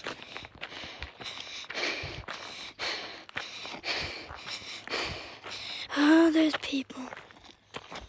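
Footsteps on a dry dirt trail at a walking pace, about two steps a second. About six seconds in, a person's voice gives a short call, the loudest sound.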